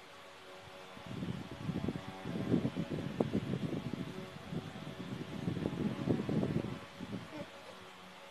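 Electric fan running with a steady hum. From about a second in until about seven seconds, low, muffled rustling and bumping close to the microphone.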